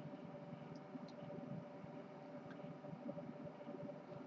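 Faint room tone: a low steady hum and hiss with no distinct sound event.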